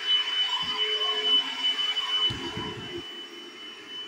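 Bissell SpotClean portable carpet cleaner's motor running steadily with a high whine over a rushing hiss. A few dull bumps come about two and a half seconds in.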